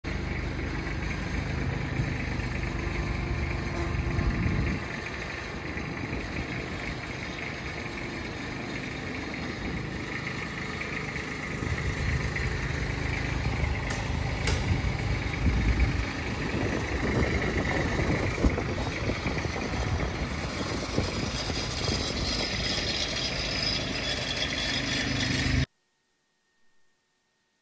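Compact utility tractor's engine running at low speed while towing a light aircraft, its low rumble easing off about five seconds in and building again from about twelve seconds; the sound cuts off suddenly near the end.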